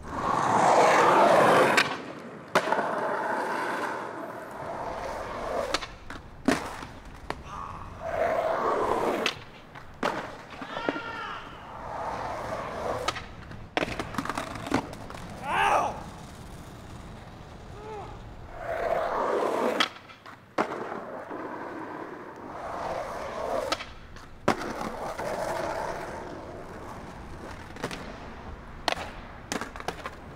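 Skateboard wheels rolling on rough asphalt in several runs, broken by the sharp snap of the tail popping and the crack and clatter of the board hitting the ground on landings and bails.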